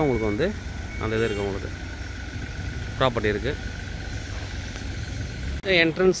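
A man talking in short, broken phrases with long pauses, over a steady low rumble and a faint, steady high whine.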